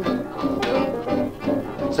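A 1940s blues band plays a short instrumental fill between sung lines, with a steady swinging beat of piano, guitar, string bass and drums. It is heard played back from a 78 rpm shellac record.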